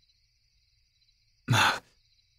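A man's short sigh about one and a half seconds in, breathed out once after a pause.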